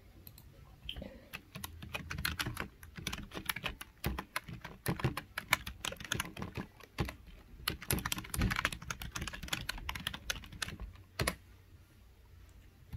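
Typing on a computer keyboard: irregular runs of quick key clicks with short pauses between them, ending with one last separate click near the end.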